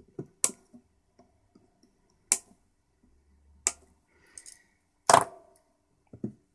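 Sharp clicks and taps from a small printed circuit board and through-hole transistors being handled: four distinct clicks a second or two apart, with faint ticks between, the last click the loudest.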